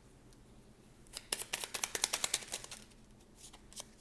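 A deck of oracle cards being shuffled by hand: a quick run of flicking clicks starts about a second in and thins out shortly before the end.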